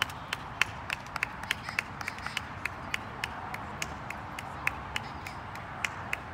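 Scattered sharp hand claps, about three to five a second and unevenly spaced, over a steady outdoor hiss.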